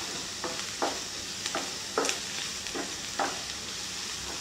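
Chopped onions and curry leaves sizzling in a non-stick frying pan, with a spatula stirring through them in short, repeated scrapes against the pan.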